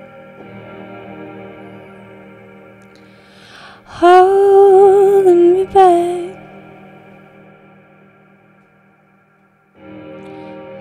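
Electronic keyboard holding soft, echoing chords; about four seconds in, a woman's voice enters loudly on a long wavering note with vibrato, drenched in echo, for about two seconds. The sound then fades almost away before the keyboard chords come back at the very end.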